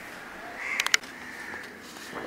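A bird calling faintly in the background, with hoarse calls near the middle of the moment. A quick run of sharp clicks just before one second in is the loudest sound.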